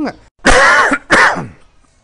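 A man coughing twice in quick succession, loudly, clearing his throat.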